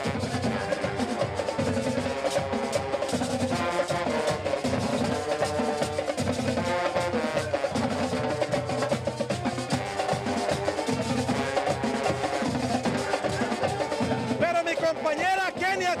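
Marching band playing live: trombones hold sustained notes over a steady beat of snare and bass drums. A man's voice comes in near the end.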